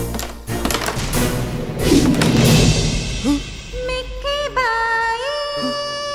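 Film background music: a run of sharp percussive hits for the first three seconds, then a wordless vocal line that slides between notes and holds one long note near the end.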